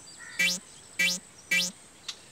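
Synthesized bouncing-ball sound effect played three times, about half a second apart, each a short rising 'boing'.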